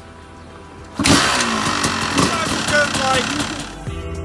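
Honda dirt bike engine kick-started, catching about a second in and then running and revving loudly.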